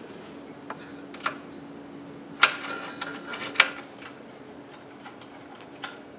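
Light metal clicks and ticks of a hex key working M5 bolts into a CNC machine's aluminium frame: a few scattered ticks, then a denser run of clicking in the middle that starts and ends with a sharper click, and one more click near the end.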